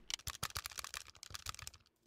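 Computer keyboard keys clicking in rapid, irregular taps, faintly, as in playing a PC video game.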